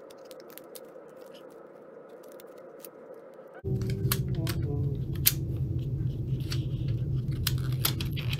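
Light clicks and taps from handling a laptop RAM stick and its plastic case over the open laptop. About three and a half seconds in, a low steady hum suddenly becomes much louder under the clicks.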